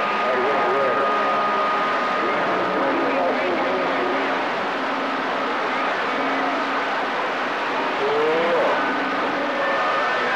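CB radio receiver giving out a hiss of static, with faint, garbled voices of distant stations coming and going through it: long-distance skip reception. A thin whistle runs for the first few seconds and another comes in near the end.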